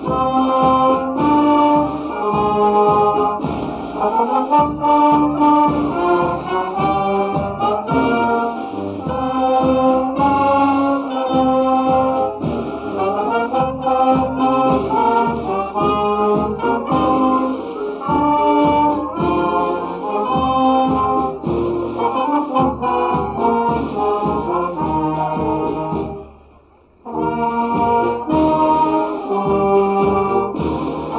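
A wind band of trumpets, trombones, saxophones and tubas playing together outdoors. The music breaks off for about a second near the end, then resumes.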